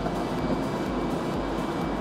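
Hydroelectric water turbine and generator set running: a steady machine drone with a faint, steady high whine.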